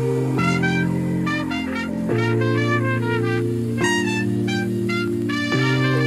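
Background music: sustained chords that change about every second and a half, with short, quick higher notes over them.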